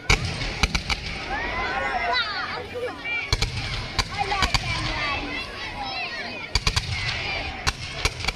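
Fireworks display: sharp bangs of bursting shells, about a dozen, several coming in quick clusters of two or three.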